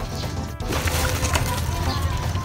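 Rustling and crackling of a cement bag as it is handled and cement powder is tipped out, with faint background music underneath.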